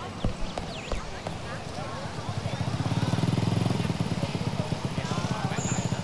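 Small step-through motorbike engine running with a fast, even putter that comes in about two seconds in and stays loud, over high chirping in the background. Two short knocks in the first second.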